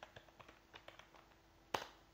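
Computer keyboard typing: a quick run of faint keystrokes, then one sharper, louder key strike near the end.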